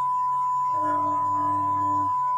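Pure, steady 1 kHz test tone from a signal generator, the first step of a frequency sweep to check an audio chain's passband. Partway through, a man's drawn-out 'eee' of hesitation sounds under the tone.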